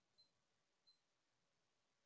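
Near silence, with two very faint, brief high-pitched blips about a quarter second and a second in.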